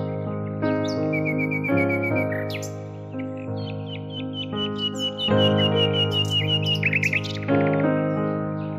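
Instrumental music of sustained keyboard chords that change about once a second, with bird chirping over it. A short run of rapid, evenly repeated tweets comes about a second in, and a longer run comes from about the middle until near the end.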